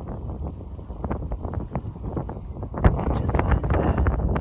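Wind buffeting a phone microphone outdoors: a low rumble with short crackling knocks, the strongest gust about three seconds in.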